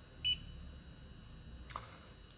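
Dental LED curing light giving one short high-pitched electronic beep while it cures the resin. A faint click follows near the end.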